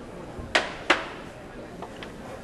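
Two sharp clacks about a third of a second apart, each ringing briefly, from hard objects striking.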